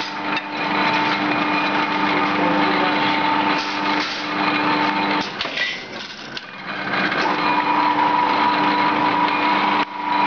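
Steel-strip straightening and cut-to-length machine with a pneumatic press running: a steady machine hum with held tones. The hum drops away about five seconds in and comes back about two seconds later.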